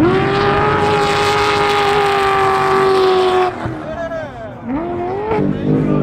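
Off-road race vehicle engine at full throttle, one loud steady high note for about three and a half seconds. It breaks off abruptly, then the engine note dips and climbs back up as the throttle is lifted and reapplied.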